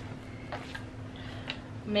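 Hand-held staple gun firing staples through fabric into a wooden canvas frame: a few faint, sharp clicks, the clearest about one and a half seconds in, over a low steady hum.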